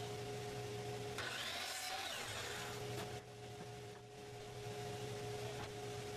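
DeWalt miter saw running and cutting through a thin strip of wood, with a stretch of cutting noise from about one to two and a half seconds in, over a steady motor hum.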